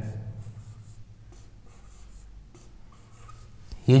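Marker pen drawing on a whiteboard: a series of faint, short strokes as small boxes are sketched.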